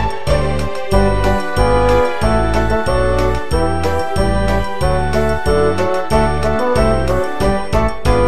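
Instrumental break in a children's song: a melody over a steady bass line of about two notes a second, with no singing.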